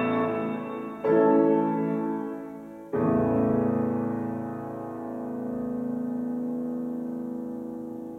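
Grand piano playing the closing chords of a piece: a chord struck about a second in, then a final chord about three seconds in that is held and left to ring, slowly fading.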